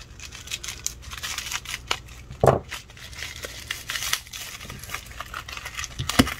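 Scissors snipping through bubble wrap and packing tape, with plastic crinkling as the wrapping is pulled open. A single thump about two and a half seconds in.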